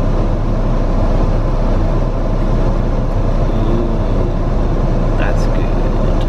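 Hyundai i40's heater fan blowing at full rush onto the windscreen to defrost it, a steady loud rush of air over the engine idling in Park.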